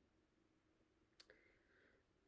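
Near silence: room tone, with one faint click a little past a second in, followed by a faint, brief hiss.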